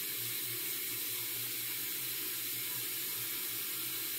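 Water from a bathroom tap running steadily into the sink, an even rushing hiss, with a faint low hum underneath.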